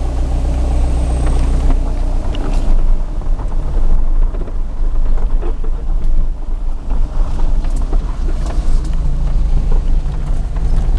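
Steady low rumble of a car driving, heard from inside the cabin, with a few short knocks and rattles scattered through.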